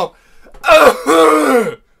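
A man clearing his throat: a raspy burst running into a voiced sound that falls in pitch, about a second long, starting about half a second in.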